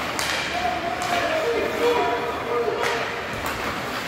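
Indistinct spectators' voices calling out at an ice hockey game, with a few sharp knocks from sticks and puck on the ice.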